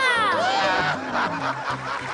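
A short, bright television music jingle: a stepped bass line with cartoon-style falling pitch glides right at the start.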